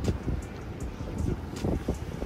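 Wind buffeting the microphone in gusts, a low uneven rumble, with surf washing in the background and a few faint clicks.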